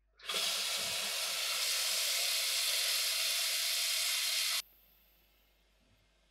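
Kitchen tap running water into a stainless steel pot in a steady rush that shuts off suddenly after about four seconds.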